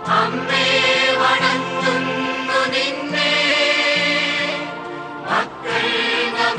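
Choir singing sacred music in long, held notes, with a short break about five seconds in.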